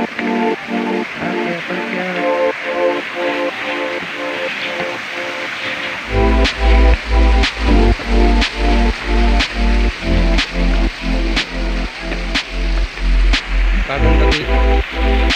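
Background electronic dance music with short repeated synth notes. A heavy bass beat comes in about six seconds in, with a sharp clap roughly once a second.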